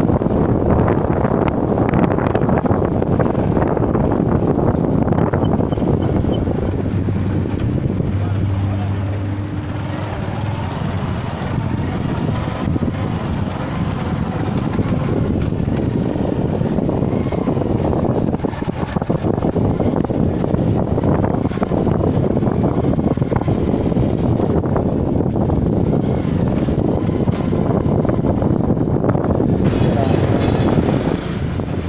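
A motorcycle riding along a street, its engine running under a loud, steady rush of wind noise on the microphone.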